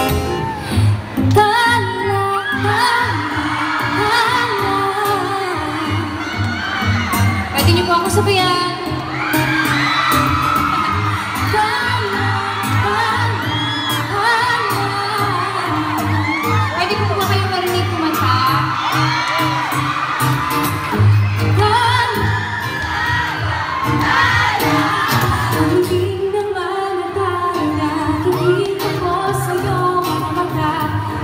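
A woman singing a pop song live through a PA microphone, accompanied by amplified acoustic guitar, with a steady low beat underneath and a crowd audible around it.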